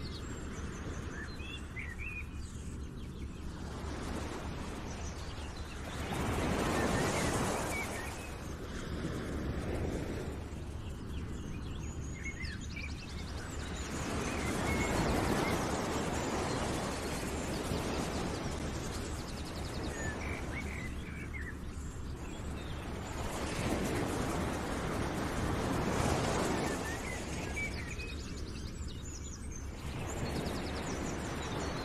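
Nature ambience: small birds chirping over a steady rushing noise that swells and fades every eight or nine seconds.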